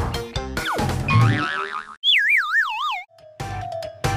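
Comic cartoon sound effects over upbeat background music: a falling whistle-like glide and a thud, then a loud wobbling whistle tone that wavers downward for about a second, a comic 'dizzy' effect, before it cuts off and the music picks up again.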